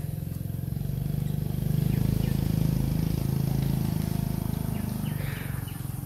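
A motor vehicle's engine running with a low, even hum, swelling about two seconds in and easing off again near the end.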